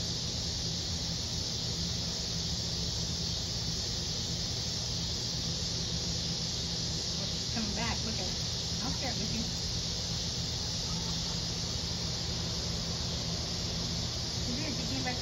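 Steady high-pitched insect chorus with a low hum beneath it; a chicken gives a few short calls about eight seconds in.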